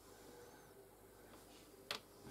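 Near silence: faint room tone, with one short sharp click just before the end.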